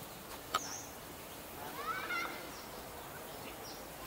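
Outdoor ambience with scattered bird chirps: a sharp high chirp about half a second in, a short rising call about two seconds in, and faint high chirps near the end.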